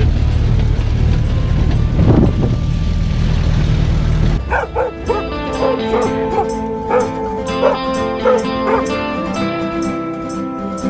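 Open-top jeep driving, a steady low engine and wind rumble, with one short call about two seconds in. A little over four seconds in it cuts suddenly to background music of plucked-string notes.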